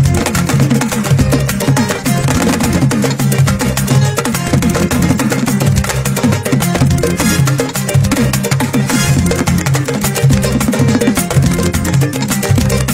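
Upbeat Gambian kora band music with driving drums and quick, busy percussion over a steady bass line, without singing.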